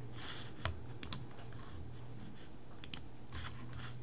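A few scattered, sharp clicks and taps at a computer's mouse and keyboard, over a steady low hum.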